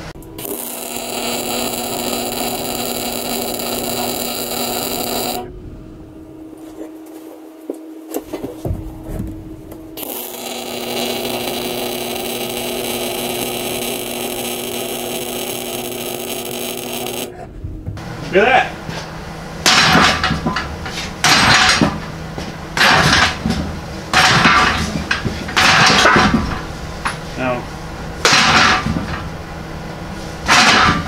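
Wire-feed (MIG) welder running two steady welds of about five and seven seconds, then a string of short welding bursts roughly every one and a half seconds.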